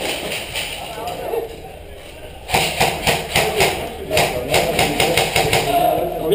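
Airsoft rifle fire: a rapid, evenly spaced string of sharp shots, about six or seven a second, starting about two and a half seconds in and running on.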